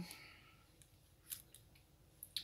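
Near silence: room tone with a few faint, short clicks, the clearest a little past halfway.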